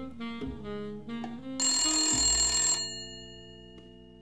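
Slow jazz with saxophone plays throughout. About one and a half seconds in, a telephone bell rings once for a little over a second and cuts off sharply, its tone hanging on briefly.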